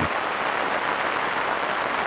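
Rain falling steadily, an even noise of many drops with no pitch to it.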